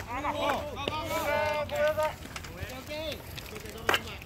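Players' voices on a baseball field calling out in long, drawn-out shouts for about three seconds, with one sharp knock near the end.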